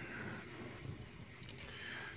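Quiet room tone with a faint hiss, broken by a couple of light ticks about one and a half seconds in.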